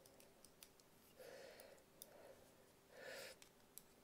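Near silence with faint small clicks from a plastic H0 model locomotive chassis being handled in the fingers, and two soft hushing sounds, about a second in and about three seconds in.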